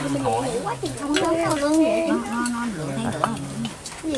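Several people chatting over each other at a meal, with scattered clinks of spoons against metal bowls.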